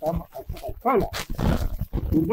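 A man's voice speaking into microphones. About a second in it gives way to a short rough, breathy sound.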